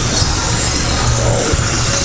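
Background music playing at a steady level, with a dense noise beneath it.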